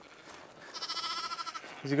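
A lamb bleating once: a single high-pitched call about a second long.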